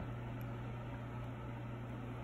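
Steady low hum with faint even hiss: background room noise, with no distinct event standing out.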